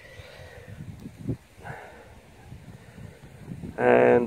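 Faint handling noise of a gloved hand in grass and loose soil, with a single soft thump about a second in.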